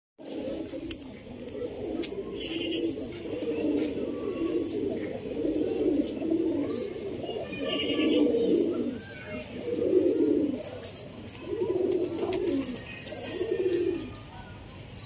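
Domestic pigeons cooing: several birds' low, rolling coos overlapping in an almost unbroken chorus.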